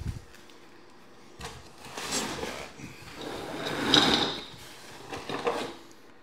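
Hands rummaging in a cardboard shipping box, with cardboard scraping and packaging rustling, loudest about four seconds in; a dull thump right at the start.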